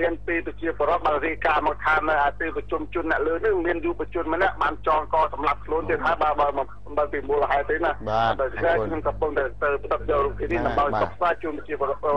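Continuous speech of a Khmer news report, sounding thin and narrow, like a voice over a telephone line.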